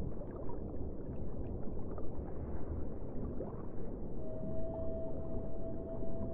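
A low, rough ambient drone with no speech, joined about four seconds in by a single steady held tone.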